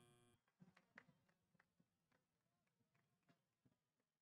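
Near silence, with a couple of very faint ticks about a second in.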